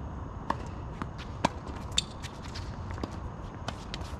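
Tennis ball pops on an outdoor hard court: three sharp strikes and bounces in the first two seconds, followed by fainter scattered clicks of players' footsteps, over a steady low outdoor rumble.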